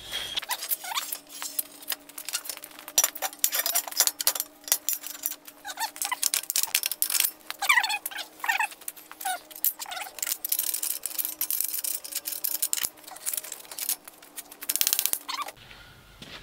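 Steel roll-bar tubing and tube-bender parts being handled: rapid clinks, knocks and clatter of metal, with short squeaky chirps over a faint steady hum.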